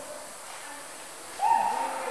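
Faint room noise, then about one and a half seconds in a person's voice gives a short held vocal sound without clear words.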